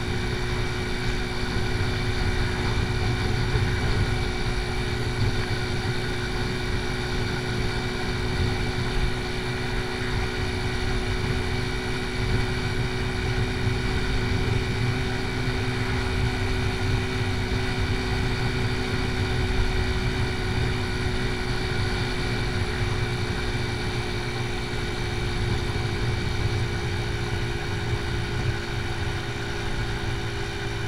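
AJS Tempest Scrambler 125's single-cylinder four-stroke engine running steadily at cruising speed, with wind rushing over the microphone.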